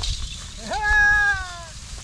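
A man's long, drawn-out call to a pair of threshing oxen, urging them on. It is one sustained call of about a second that rises quickly, holds steady and falls slightly at the end.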